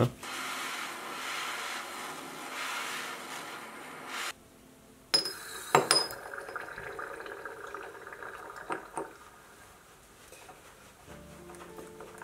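Red-hot mild steel tool holder quenched in raw linseed oil in a small glass jar: a couple of sharp clinks against the glass, then crackling sizzle that fades as the oil smokes and polymerises onto the steel. A steady hiss fills the first four seconds.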